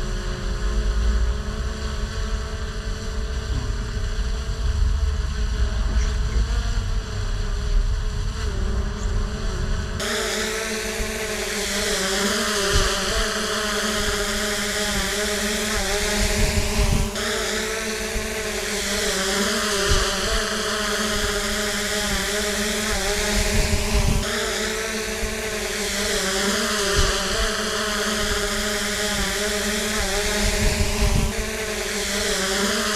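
Small quadcopter drone (DJI Mini 3 Pro) buzzing steadily in flight, its propellers holding a constant pitch. Wind rumbles on the microphone for the first several seconds. After an abrupt change about ten seconds in, the buzz carries a hiss that swells and sweeps slowly.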